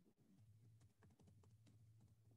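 Near silence with faint, irregular computer keyboard key clicks, typing, over a low steady hum.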